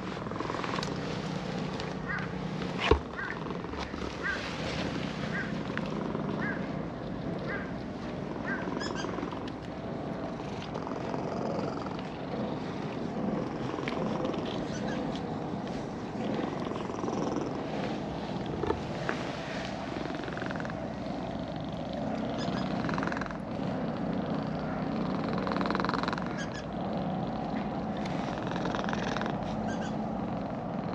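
Orange-and-white cat purring steadily while being stroked, over the light rustle of a hand rubbing its fur. One sharp click sounds about three seconds in.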